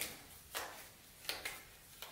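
A small stack of paper cards being shuffled by hand: two short, soft swishes about three-quarters of a second apart.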